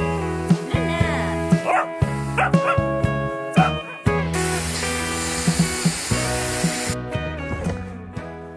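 A small dog barking and yipping over background music in the first half. About four seconds in, a Dyson hair styler blows a steady rush of air for about three seconds, then cuts off.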